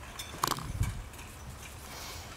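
A sharp click about half a second in, a low thump just after it, and a few fainter clicks and knocks over a low steady room hum.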